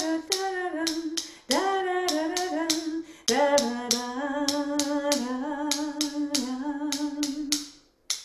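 A woman singing the ostinato on 'da' in long held notes, over sharp clicks at about three a second from the wooden handles of two xylophone mallets tapped together to keep the beat.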